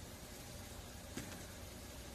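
Quiet room tone: a steady faint hiss, with one small click a little past a second in.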